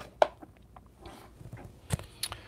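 Hard plastic trading-card holders clicking as they are handled: two sharp clicks, one shortly after the start and one near the end, with faint rustling between.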